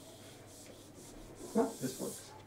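Felt-tip marker rubbing and scraping across a whiteboard as someone writes, with two brief louder sounds in quick succession about one and a half seconds in.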